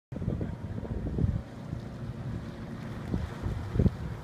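Wind buffeting the microphone in uneven gusts, over the low, steady rumble of a workboat's engine as the boat motors slowly out of its slip.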